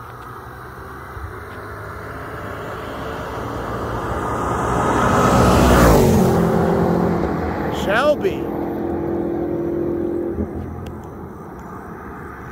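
Racing cars at full throttle passing close by: the sound builds to its loudest as the white BMW M5 Competition goes past about six seconds in, then the engine note drops in pitch and fades as the cars pull away. A brief shout follows about two seconds later.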